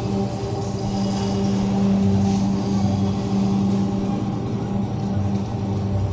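A steady low hum of unchanging pitch, like a motor running, with a few faint scratches of a marker writing on a whiteboard.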